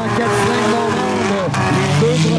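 Engines of several four-cylinder race cars revving up and down, the pitch rising and falling over and over.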